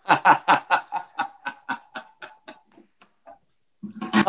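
A man laughing hard: a run of quick bursts of laughter, about four or five a second, growing fainter and dying away after about three seconds.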